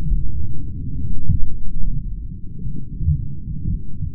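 Slowed-down replay audio: a deep, muffled rumble that swells and dips, with a few dull thumps.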